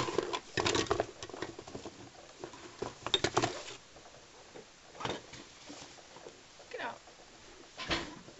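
Hands rummaging through a padded baby-bottle box, with plastic bottle parts clicking and the fabric rustling in several short spells.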